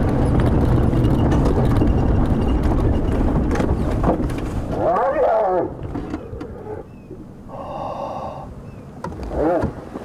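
Game-drive vehicle engine running for the first half, cutting out about five and a half seconds in. Spotted hyenas fighting give high, wavering calls about five seconds in and again near the end, with a held call between.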